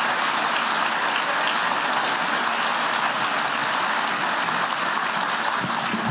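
Large auditorium audience applauding steadily, a dense wash of many hands clapping, easing off slightly near the end.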